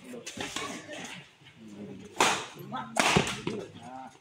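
Badminton racquets striking a shuttlecock in a doubles rally: a few sharp cracks, the loudest two about a second apart in the second half, with voices in the background.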